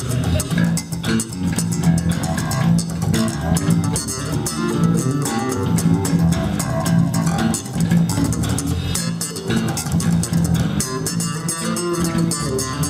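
Two electric bass guitars played together through amplifiers in a freestyle jam, a steady stream of plucked low notes with sharp attacks.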